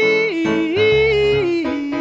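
A woman singing long held notes into a microphone over sustained electronic keyboard chords. Her voice holds a high note, dips and returns, then settles on a lower note near the end.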